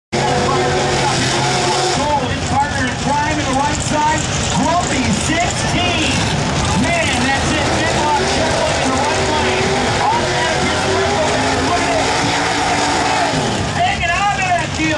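Nostalgia pro stock drag cars' V8 engines running loud and steady through their burnouts, with tyre smoke pouring off the spinning rear wheels. A public-address announcer's voice carries over the engine noise.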